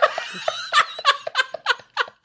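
Men laughing hard together in a run of short, quick bursts.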